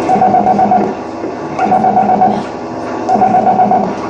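Live experimental noise music: three warbling, fluttering bursts of sound, each lasting under a second and coming about a second and a half apart.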